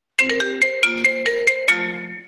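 A marimba-style ringtone melody: a quick run of bright mallet notes that starts suddenly and is louder than the voice around it, dying away near the end before the phrase repeats.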